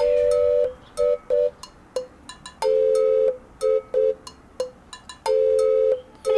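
Background music: a simple repeating phrase. A long held note is followed by two short notes, and the pattern comes round about every two and a half seconds, over light percussive ticks.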